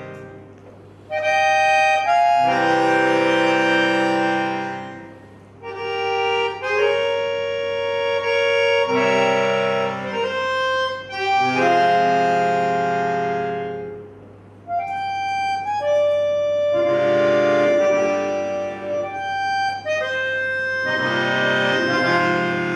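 Solo Pigini chromatic button accordion playing sustained chords in phrases that swell and fade, with brief lulls between phrases about five seconds in and again about fourteen seconds in.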